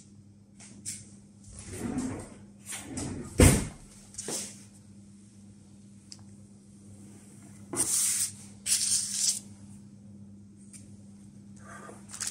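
Kitchen knife cutting a sheet of puff pastry into quarters on baking paper: a knock a few seconds in, then two short scraping rustles later on as the blade is drawn across the pastry and paper.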